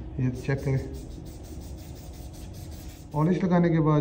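Aerosol polish spray hissing onto the snooker table's rail in one long burst of about three seconds, then cutting off.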